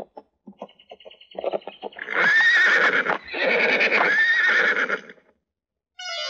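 Horse's hooves clip-clopping, then the horse whinnying loudly twice, each neigh a long call with a rising-and-falling pitch, about two seconds apart.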